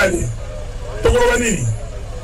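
A man's voice speaking through a microphone and loudspeakers: a short phrase at the start and another about a second in, separated by a pause. A steady low hum runs underneath.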